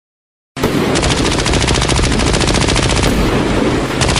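Sound effect of sustained, rapid machine-gun fire, starting about half a second in after a moment of silence.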